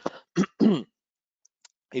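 A man coughing and clearing his throat: three short, harsh sounds within the first second, the last with a falling pitch.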